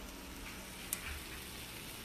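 Eggplant slices frying in a pan, a low, steady sizzle, with one small click about a second in.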